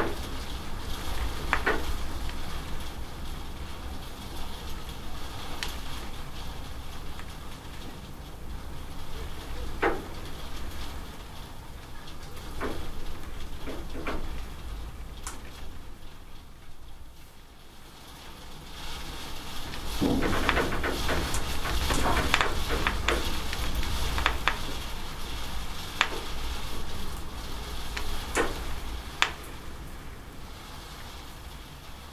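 Steady rain falling, with scattered sharp drips and splashes off the edge of a corrugated roof. The rain eases a little past the middle, then grows heavier again.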